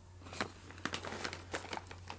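Plastic snack pouch crinkling as it is handled, a quick run of irregular sharp crackles.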